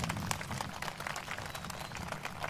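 Faint, irregular crackling clicks over a low, steady rumble of open-air background.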